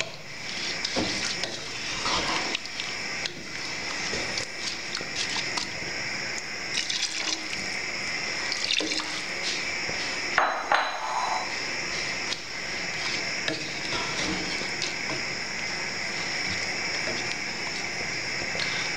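Water being poured from a jug into a hot pot of rice and vegetables, with a steady liquid hiss and occasional knocks of a wooden spoon stirring in the pot.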